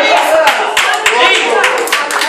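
Hand clapping in a steady rhythm, about four claps a second, with voices calling out over it.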